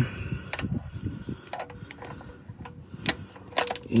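Scattered metal clicks and clinks of a socket, extension and ratchet being fitted onto the hex cap of a plastic canister oil filter housing, with a quicker run of clicks near the end.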